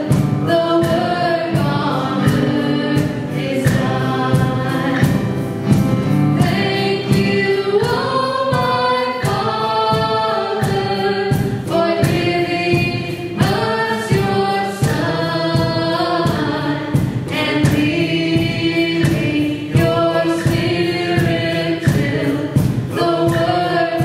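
Live worship song: a woman singing lead, with other voices, over strummed guitar and piano in a steady beat.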